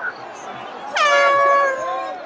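A single horn blast in a crowd, starting about a second in and held steady for nearly a second, over the voices of the surrounding crowd.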